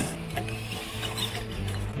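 Tamiya Clodbuster RC monster truck running at full throttle on its stock 27-turn brushed motors, with the motors and gearboxes whirring steadily.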